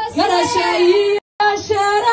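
A woman singing into a microphone, holding long notes that bend up and down. The sound cuts out completely for a split second a little over a second in.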